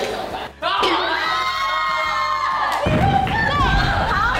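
A small group of people shouting and shrieking excitedly together, breaking into laughter near the end.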